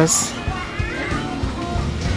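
Store background: background music with faint distant voices over a low steady hum.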